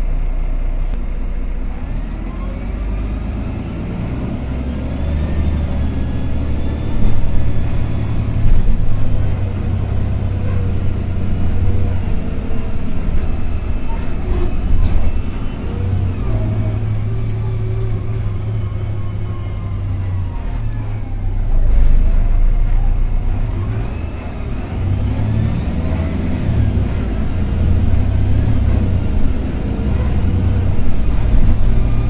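Karosa B961E articulated city bus heard from inside the passenger cabin while driving: the diesel engine runs steadily under load, with road and body noise, and its whine rises in pitch twice as the bus accelerates, a few seconds in and again near the end.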